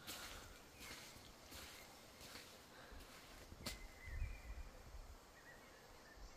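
Faint creaking calls of a small bird, like a dry hinge: a few short high notes a little past halfway through and again near the end. A few soft clicks sound underneath.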